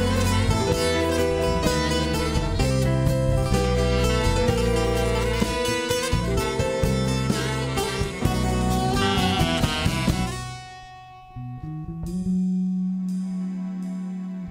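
An instrumental jazz-fusion band plays saxophone, bouzouki, bass guitar, piano and drums together. The full band drops out about ten and a half seconds in. A quieter passage follows, with a held low note and plucked strings.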